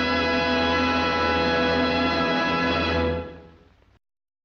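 Orchestral music holding a final sustained chord. It cuts off a little over three seconds in and dies away to silence.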